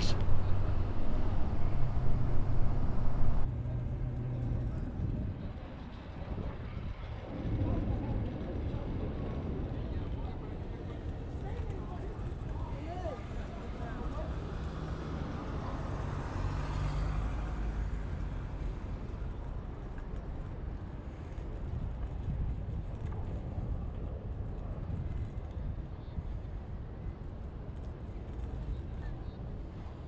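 Outdoor city street sound heard while riding a kick scooter on smooth, freshly paved asphalt: steady low road and wheel noise with traffic around. The first few seconds are louder.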